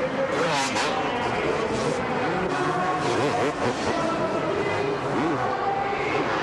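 Two-stroke supercross motorcycles revving, engine pitch repeatedly rising and falling as the throttle is worked.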